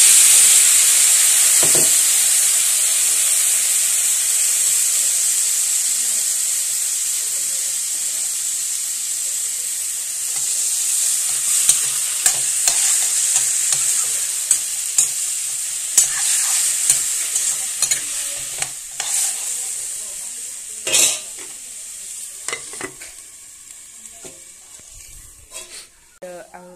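Food sizzling and frying in hot oil in a steel wok, loud at first and slowly dying down. From about halfway through, a metal spatula scrapes and clinks against the wok as the food is stirred, with one louder knock near the end.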